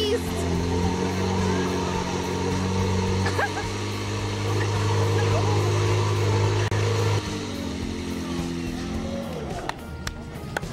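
Portable fire pump engine running hard at full throttle with a steady drone. About seven seconds in it is throttled back and drops to a lower note.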